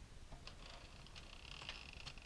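Faint, scattered clicking from an Addi Professional 22-needle circular knitting machine as its crank handle is turned and the needles move through their track.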